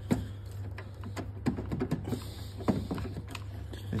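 Scattered light clicks and taps of tools and parts being handled, over a steady low hum.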